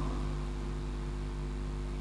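Steady low electrical hum with a faint hiss, unchanging throughout.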